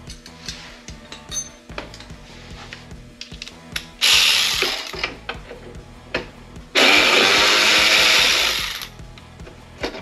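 Ratchet spinning off the 10 mm bolts that hold the side panel, in two bursts of fast ratcheting: a short one about four seconds in and a longer one of about two seconds starting near seven seconds.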